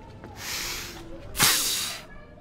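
A woman spitting a cherry pit hard through pursed lips: a breathy puff, then a louder hissing spit about one and a half seconds in.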